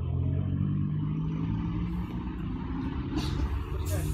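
Motorcycle engine idling steadily, with two brief sharp clicks near the end.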